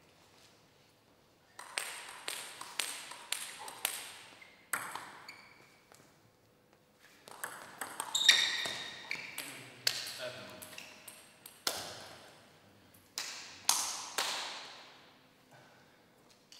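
Table tennis rallies: the ball clicking back and forth off bats and table, each hit ringing on in the echoing hall. There is a short rally in the first few seconds and a longer one through the middle, each ending in a last hit that trails away.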